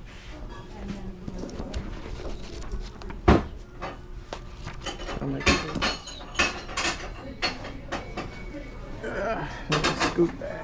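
Knocks and light clattering of small objects being handled, the sharpest knock about three seconds in and a run of clicks in the second half, over a faint murmur of voices.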